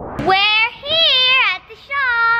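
A young child singing drawn-out, high notes that waver up and down, with short breaks between them.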